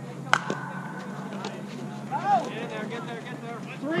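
A softball bat hitting a pitched ball: one sharp crack about a third of a second in, with a short ringing ping after it. Players shout a couple of seconds later, and there is a call of "Three!" near the end.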